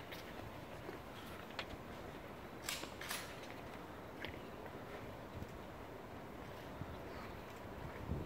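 Hushed outdoor ambience of a large, silent crowd, broken by a few short sharp clicks: one about one and a half seconds in, two close together near three seconds, and a fainter one about four seconds in.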